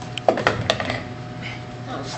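Billiard balls clacking together three or four times in quick succession, with a short falling cry among the clacks.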